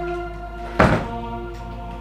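A single loud thunk at an interior door as its lock is worked to lock it, a little under a second in, over steady background music.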